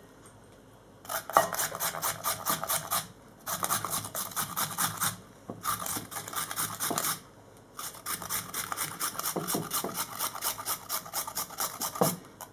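Carrot being grated on the coarse holes of a flat metal hand grater: rapid rasping strokes in four runs, with short pauses between them.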